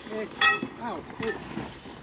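A single sharp metallic clink with a brief ring about half a second in, amid people's voices.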